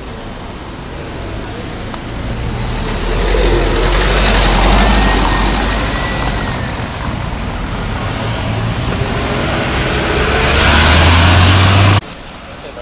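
Motor traffic in a street: a vehicle's engine rumble and tyre noise, swelling about three seconds in and again near the end.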